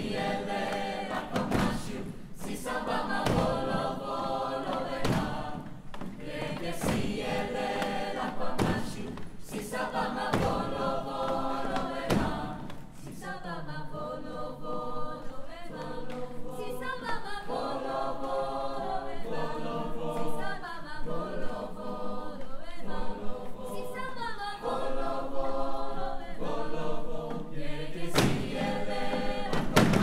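Mixed choir of young singers performing a lively up-tempo piece in full harmony, with sharp hand claps cutting through the singing at intervals as part of the choreography.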